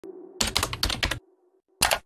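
Computer keyboard typing: a quick run of about half a dozen key clicks, a short pause, then one last keystroke near the end, over a faint steady low hum.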